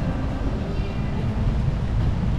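Wind buffeting the camera's microphone: a steady low rumble that flutters unevenly.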